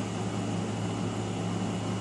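Steady low hum with an even hiss underneath: constant background noise, with no distinct event.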